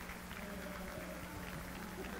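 Faint background noise of a large event hall: distant music and crowd murmur over a steady low hum.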